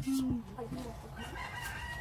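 A rooster crowing once: one long, faint call beginning a little past halfway.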